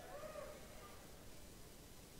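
Near silence: a pause in a man's speech, with a faint echo of his last words dying away in the first half second, then only low hiss.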